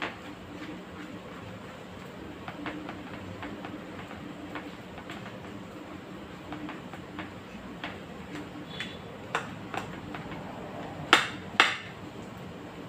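Knife cutting soft ripe plantain into chunks in a bowl: a run of light clicks as the blade meets the bowl, with two louder knocks near the end.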